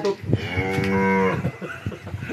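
A cow mooing once: a single long, low call of about a second, dropping slightly in pitch as it ends.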